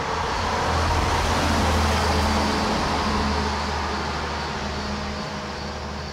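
A vehicle passing: road noise swelling to a peak about two seconds in and then fading, over a steady low hum, with crickets chirping faintly in the background.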